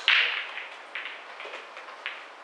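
Sharp clicks of pool balls striking one another. One loud crack with a short ringing tail comes right at the start, followed by fainter clicks about a second and a second and a half in and again near the end.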